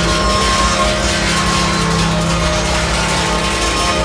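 Power electronics noise music: a loud, dense wall of noise over a steady low drone, with a few sustained higher tones.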